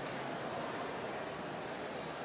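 Steady, even background hiss with no distinct event standing out.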